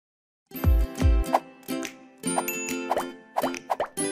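Short cartoon-style outro jingle. It starts about half a second in with two deep thumps, then a bright tune broken by quick rising plops.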